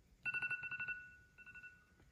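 Smartphone alarm ringing: a high electronic tone that breaks into a fast trill of beeps about a quarter second in, fades, then comes back briefly about a second and a half in.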